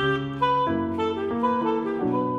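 Clarinet, tenor saxophone and digital piano playing a slow jazz standard together. The melody steps from note to note every fraction of a second over held harmony.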